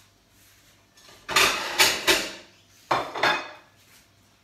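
A knife and green apples knocking and scraping against a plate. A cluster of three sharp clatters comes a little over a second in, and a shorter one near three seconds.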